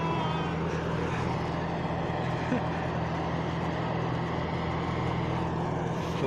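Rice combine harvester's engine running with a steady drone as the machine works through deep paddy mud.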